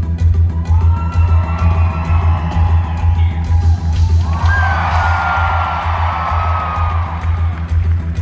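Live concert music with a heavy pulsing bass and a steady drum beat; the drum hits drop back about halfway through while a held high melody line swells over the bass.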